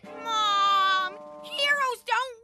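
A boy's whining voice: one long, drawn-out protesting note lasting about a second, followed by shorter falling vocal sounds near the end.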